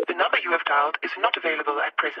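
A sampled voice with the thin, narrow sound of a telephone line, like an answering-machine message, with no beat under it.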